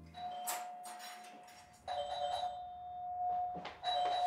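Doorbell ringing repeatedly: a steady chime tone sounds, is struck again with a second note about two seconds in, and sounds once more near the end.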